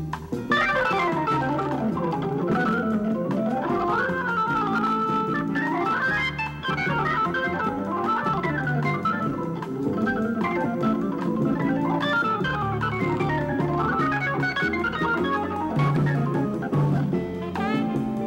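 Hammond organ played solo in a soul-jazz style: quick runs of single notes climbing and falling in the upper range over held low chords.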